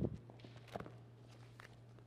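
Footsteps and knocks on a hardwood floor, over a steady low hum. A loud thump comes at the start, a sharp knock a little under a second in, and lighter taps after.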